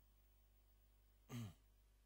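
Near silence, broken once, about one and a half seconds in, by a brief, faint sound that glides down in pitch.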